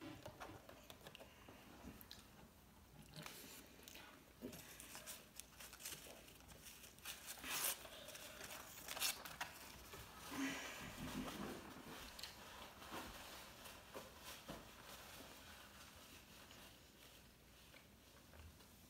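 Close-miked eating and handling sounds: fingers tearing apart a crispy fried sushi roll, chewing, and scattered light clicks and taps of plastic food containers and an aluminium soda can, with two sharper clicks a little after the middle.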